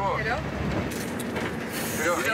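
Low, steady rumble and rattle of a motorhome cabin in motion, heard from inside, with a voice trailing off at the start.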